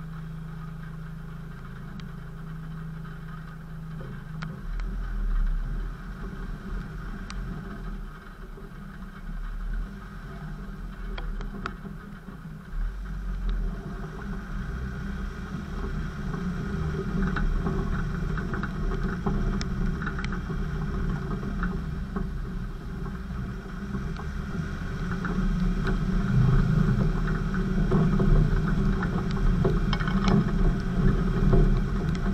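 Land Rover 4x4 engine idling steadily for the first few seconds, then pulling away and driving off-road, running rougher and growing louder as it works up a slope near the end. Small clicks and knocks are scattered through it.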